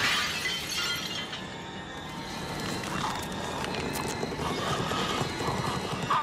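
Film soundtrack: a sudden shattering crash that fades over about a second, followed by film score music.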